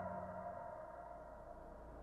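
A deep, gong-like ringing tone with several overtones dies away faintly, while a low hum begins to build in the second half.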